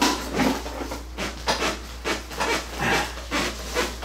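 A man breathing hard in quick, harsh, rasping breaths, about two or three a second, in pain right after injections into both heels.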